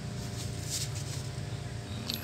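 Steady low hum, with faint rustling of a paper banknote as it is turned over by hand.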